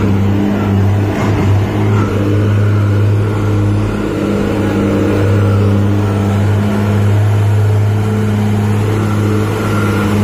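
Diesel engine of a Hyster reach stacker running at a steady, even pitch as the machine drives up close.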